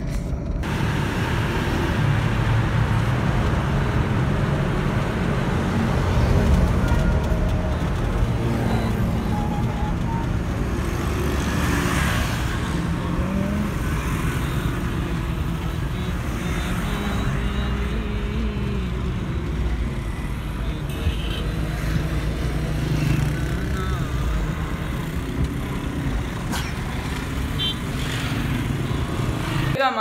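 Car driving through city traffic, heard from inside the cabin: steady engine and road noise.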